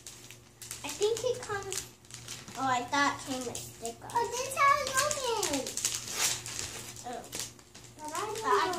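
A young child talking in short stretches, with crinkling from a clear plastic wrapper being handled in between.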